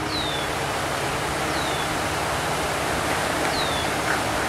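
Concrete pump running while concrete is fed through the hose into the wall forms, a steady rushing noise. Three short, high, falling chirps sound over it, about a second and a half to two seconds apart.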